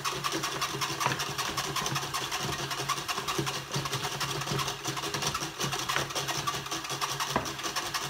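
Homemade applause machine running fast: its DC motor runs steadily while two hollow plastic hands on spring-loaded kitchen-tong arms slap together in a rapid, continuous clatter.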